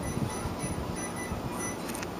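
Several short, faint electronic beeps from an electric range's touch-control panel as keys are pressed, the kind made when setting the oven timer.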